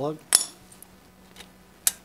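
Two sharp metallic clicks about a second and a half apart, with faint ticks between: a spark plug boot being worked onto the newly fitted plug of a Briggs & Stratton 6.5 engine, snapping onto the terminal with a solid connection.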